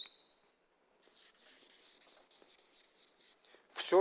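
Felt-tip marker drawing on flip-chart paper: a quick run of short rubbing strokes, starting about a second in and lasting a couple of seconds. A single sharp click comes at the very start.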